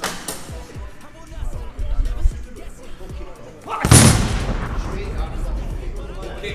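A hard punch landing on the pad of a boxing arcade punch machine about four seconds in: one loud bang with a tail that dies away over the next two seconds. There is a sharper knock right at the start.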